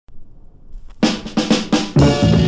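A quick drum fill, mostly snare, kicks off a soul record about a second in. Before it there is near quiet with a couple of faint clicks.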